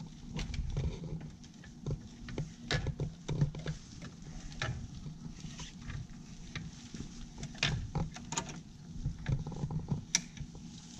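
A cloth towel rubbing and wiping the stainless-steel front of a soda fountain dispenser, with scattered light clicks and knocks against the metal. A low steady hum sits underneath.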